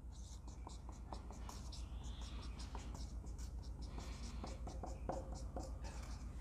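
Felt-tip marker writing on a whiteboard: a run of faint, short strokes as letters are drawn one after another.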